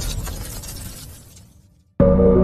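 A noisy, crash-like sound effect from a title sequence, fading out steadily to silence over about two seconds.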